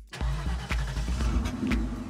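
A car engine sound effect, a noisy rush with a low rumble that starts just after a brief gap, laid over background music with a steady beat.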